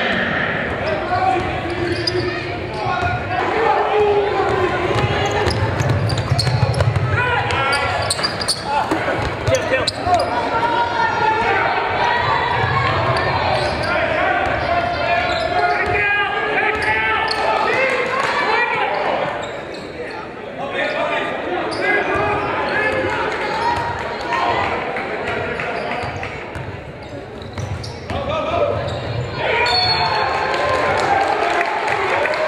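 Sound of a live basketball game: a ball dribbling on a hardwood gym floor amid the continuous voices of players and spectators.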